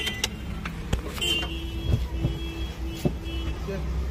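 Maruti Wagon R's ignition key and controls being worked: several sharp clicks over a steady low hum. A faint held tone comes in about a second in.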